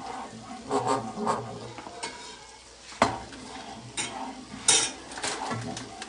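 Butter melting and sizzling in a frying pan while a wooden spoon stirs it, scraping across the pan with a few irregular knocks.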